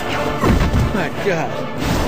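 Action-film soundtrack: music under crashing, smashing impact sound effects, with a strong hit about half a second in.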